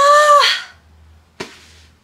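A woman's long, high-pitched, weary sigh, 'haa~', lasting under a second, followed by a single short thump about a second and a half in.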